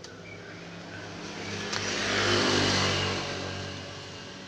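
A road vehicle passing by, its noise swelling to a peak about two and a half seconds in and then fading, over a steady low engine hum.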